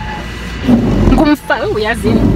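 Garbage truck engine idling: a steady low rumble heard from inside a car, with a woman's voice over it in the second half.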